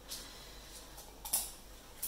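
A short rasp of sticky tape pulled off a roll, about a second and a half in, amid faint handling sounds.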